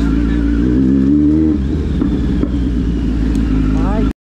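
Kawasaki Z900's inline-four engine running at low road speed, its note rising slightly over the first second and a half and then easing off.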